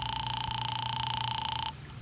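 Telephone ring signal heard down the line while a call to police headquarters rings through: one steady buzzy tone that cuts off about 1.7 seconds in as the call is answered.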